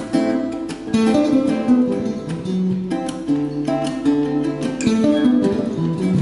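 Two Baffo acoustic guitars, an f-hole archtop and a small-bodied flat-top, playing a duet. Plucked single notes run over strummed chords, with the low notes moving underneath.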